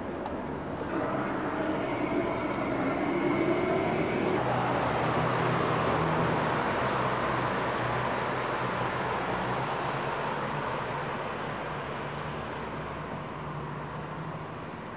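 Street traffic: a motor vehicle passes, its engine note rising for the first few seconds, then its noise swelling and slowly fading away.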